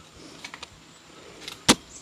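A hand knife cutting into the fibrous flower stalk of a kithul palm: a few faint scrapes and clicks, then one sharp chop near the end.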